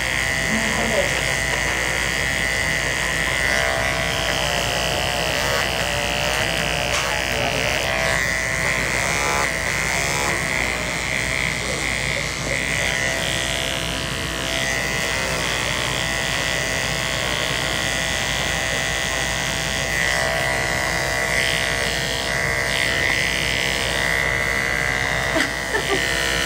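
Andis ceramic electric hair clippers with a 000 (triple-zero) blade buzzing steadily as they shear through a thick ponytail at the nape.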